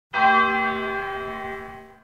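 A single bell-like chime, struck once just after the start, rings with many overtones and slowly fades away over about two seconds.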